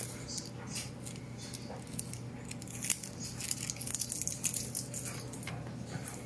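Light clicks and scrapes of a 1:18 diecast model car and its plastic display base being handled and turned, over a low steady hum.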